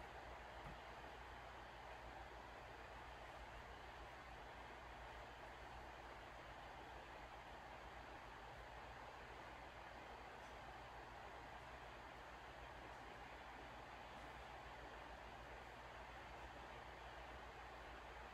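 Near silence: a steady, faint hiss of room tone.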